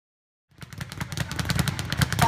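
A speed bag being punched in a rapid drumroll of hits against its rebound platform, starting about half a second in.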